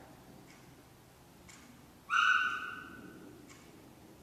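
A wall clock ticking faintly once a second. About two seconds in comes a short, high, steady-pitched tone that starts sharply and fades out over about a second.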